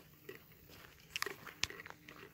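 Faint footsteps crunching on a gravel trail, a few irregular steps with the sharpest crunches a little past the middle.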